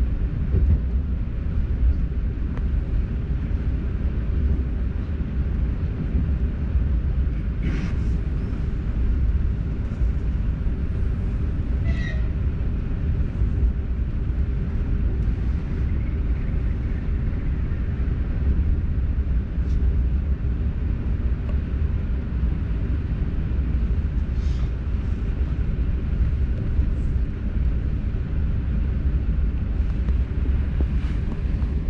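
Steady low rumble of an ES2G "Lastochka" electric train running along the line, heard from inside the car, with a few brief high clicks now and then.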